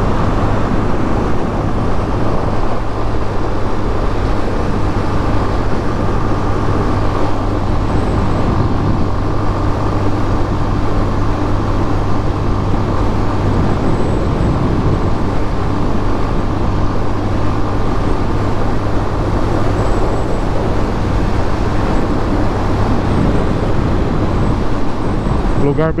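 Yamaha Fazer 250's single-cylinder engine running at a steady highway cruise, mixed with the steady rush of wind and road noise over the rider's microphone.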